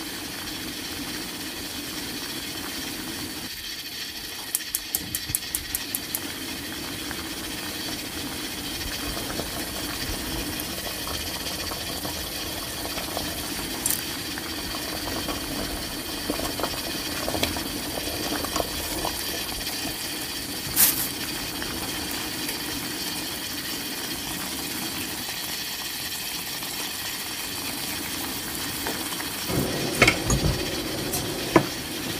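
Sliced napa cabbage boiling in a pot of water at a rolling boil: steady bubbling and hiss. A quick run of small ticks comes about five seconds in, and a single sharp click about two-thirds of the way through.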